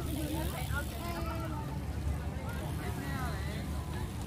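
Indistinct voices of people talking at a distance, over a steady low rumble.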